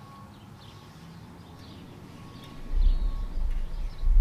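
Faint bird chirps over quiet room tone, then a low rumble from about two-thirds of the way in.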